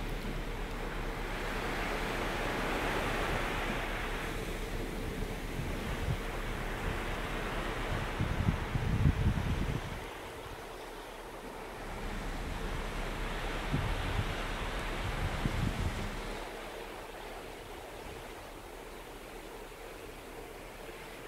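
Sea water rushing and churning along the hull of a moving cruise ship, a steady wash. Wind buffets the microphone in low gusts, strongest about eight to ten seconds in and again around fourteen to sixteen seconds.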